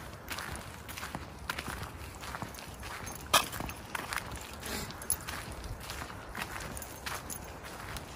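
Footsteps crunching on a dirt and gravel clearing, irregular short steps, with one sharper, louder crunch about three and a half seconds in.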